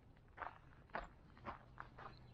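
Faint footsteps crunching on a gravel and dirt path, about two steps a second.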